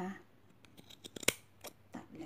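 Scissors snipping through a bundle of yarn: a string of short sharp cuts, the loudest about halfway through.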